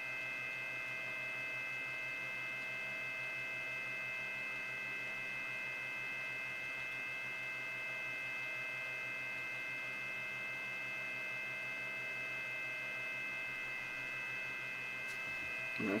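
Steady electrical hum with a constant high-pitched whine made of several unchanging tones, from powered electronics on the bench.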